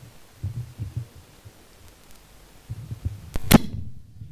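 Handling noise on a handheld microphone: irregular dull thumps and bumps, ending in one sharp click near the end.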